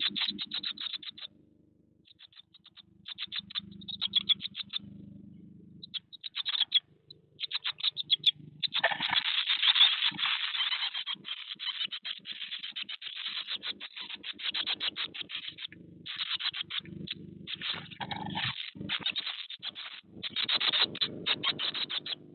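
Great tit nestlings in a nest box making rapid, high begging chirps, scattered at first and then a dense, continuous chorus from about nine seconds in as an adult arrives with food. The chicks' scratching and shuffling on the nest material runs underneath.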